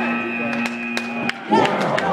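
A steady electronic buzzer tone held for about a second and a half and then cut off, with a few sharp clicks over it: a robotics competition field's end-of-match buzzer. Voices come back near the end.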